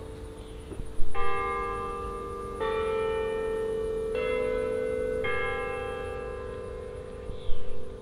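Bell tones in a music track: four chords struck one after another about every second and a half, each ringing on until the next, then fading. A brief louder hit comes near the end.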